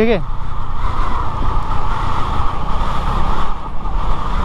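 Motorbike running steadily at riding speed on a rough gravel track, a constant low engine rumble with road and wind noise over it.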